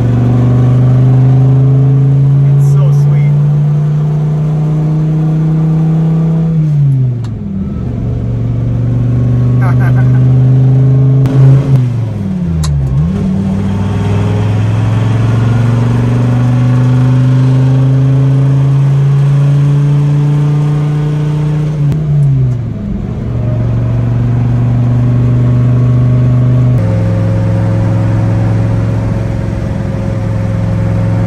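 A Dodge Viper 8.3-litre V10, heard from inside the cabin, pulling through the gears. The engine note climbs steadily and falls away at gear changes about seven and twenty-two seconds in, with a brief dip and recovery around twelve seconds. It settles to a steady cruise near the end.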